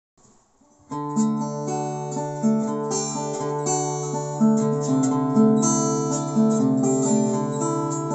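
Acoustic guitar playing a riff built around a D major chord, starting about a second in: a low note rings on underneath while higher notes change above it.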